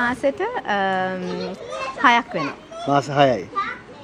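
Young children's and adults' voices talking and calling out, with one long drawn-out vocal sound about a second in.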